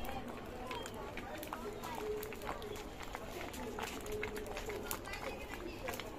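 Voices of people talking in the background, not close to the microphone, with scattered sharp crackles from the wood fire under the cooking pot.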